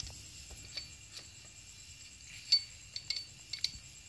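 Light metallic clicks and clinks of small steel engine parts being handled at the starter gears beside the flywheel of a Kawasaki KLX 150, a few scattered taps with a sharper clink about two and a half seconds in and a quick cluster near the end.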